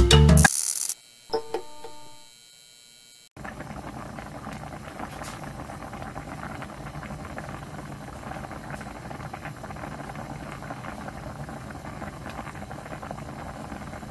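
Background music cuts off in the first second; after a short quiet pause, a pot of fish soup boils hard, a steady dense bubbling and crackling.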